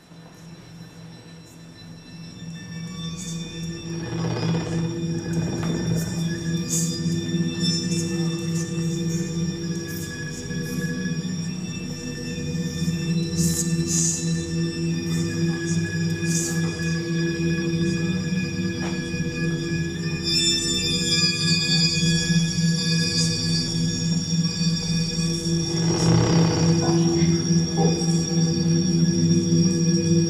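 Electroacoustic piece played back over loudspeakers: a sustained low drone of layered steady tones, with scattered high crackles and clicks over it, swelling up from near silence over the first few seconds and then holding.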